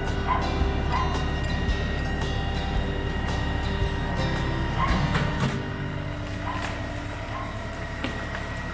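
LS tractor's diesel engine running under load as it drags a felled tree on a chain, its low rumble easing off about five and a half seconds in. A dog barks a few times over it.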